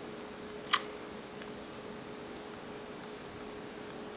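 A single short, sharp click about three quarters of a second in, the iPod touch's unlock click as the screen is slid open, over a quiet steady hiss with a faint hum.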